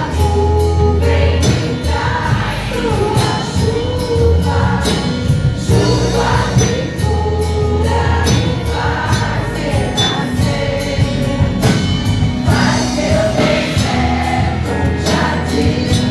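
Gospel worship song sung by a group of women's voices over amplified accompaniment with a steady bass and beat.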